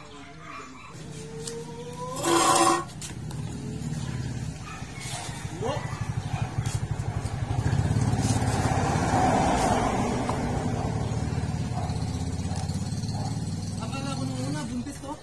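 A small motorcycle engine running close by, growing louder over several seconds and then holding steady. A short loud cry cuts in about two and a half seconds in.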